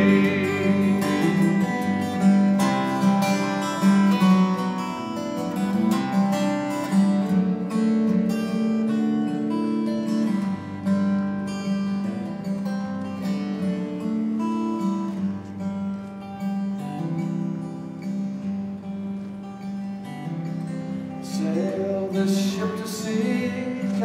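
Acoustic guitar strummed in a steady rhythm through an instrumental break between verses of a folk song, with the singing voice coming back in near the end.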